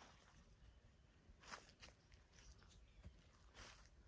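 Near silence: quiet woodland ambience with a few faint, soft steps on dry ground, about one and a half seconds in and again near the end.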